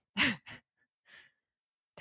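A woman's brief, breathy laugh: one short falling 'ha' with a second small puff right after, then a soft exhale about a second in.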